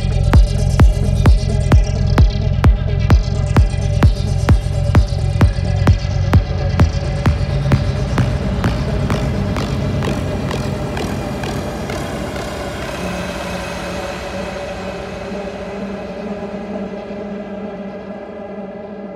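Electronic psytrance track ending: a steady kick-drum beat of a little over two beats a second under sustained synth tones. The kick fades away by about halfway, leaving the synth tones slowly fading out.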